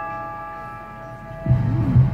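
Electric keyboard's closing chord, a bell-like tone, ringing out and slowly fading at the end of a song. About one and a half seconds in, a sudden loud low rumble cuts in.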